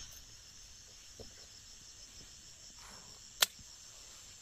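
Steady high-pitched chirring of field insects such as crickets, with one sharp click about three and a half seconds in.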